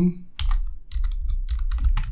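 Computer keyboard typing: a quick, irregular run of keystrokes as a line of text is entered.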